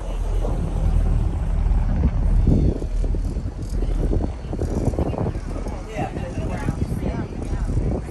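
Steady low rumble of a motor boat underway, mixed with wind on the microphone, and people talking indistinctly over it.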